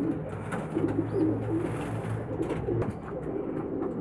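Domestic pigeons cooing: a low, drawn-out coo with short pitched notes around it.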